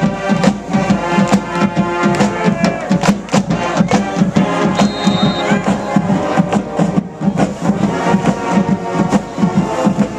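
High school marching band playing in the stands: trombones and trumpets sounding held notes over a steady drum beat.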